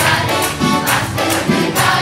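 A group of children and adults singing a Tamil Christian song together over music with a steady beat.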